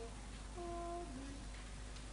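A single voice faintly humming a slow hymn tune in long held notes, stepping down in pitch about a second in.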